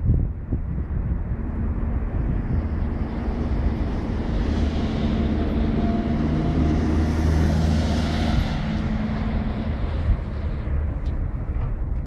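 A passing road vehicle: a low engine rumble with tyre noise that swells over several seconds, loudest about two-thirds of the way through, then fades.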